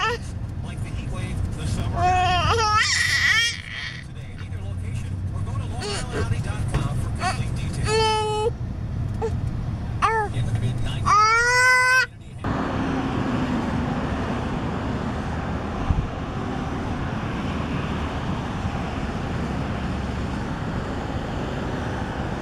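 A baby's high-pitched squeals and whiny babbling, rising and falling, over the low rumble of road noise inside a moving car. About twelve seconds in, this cuts suddenly to a steady hiss of outdoor traffic noise.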